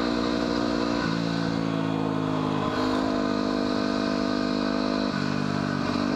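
2010 Yamaha WR250R's single-cylinder four-stroke engine running as the bike rides along a road, its pitch stepping about a second in and again near five seconds.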